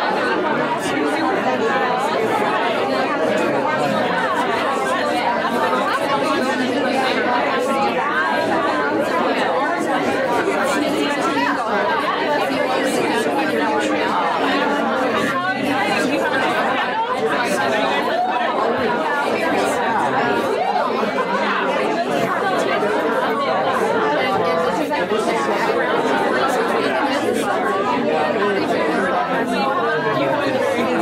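Chatter of many people talking at once: a steady hubbub of overlapping conversations in a lecture hall.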